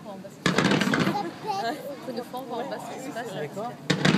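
A fireworks display, with a sudden cluster of shell bursts and crackling stars about half a second in and another dense cluster right at the end.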